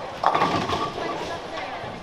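Bowling alley din: voices from around the lanes, with a sudden loud sound about a quarter second in.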